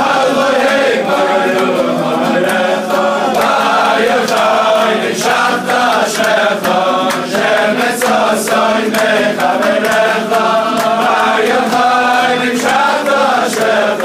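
A large group of men singing a Hebrew song together, with scattered hand claps.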